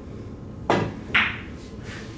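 Pool cue tip striking the cue ball, then about half a second later a sharper click of the cue ball hitting an object ball: a deliberately thin, short hit meant to avoid a scratch.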